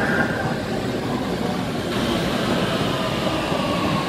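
Oslo Metro train running into an underground station alongside the platform, a steady rumble of wheels and running gear. A thin steady whine comes in about three seconds in as the train slows.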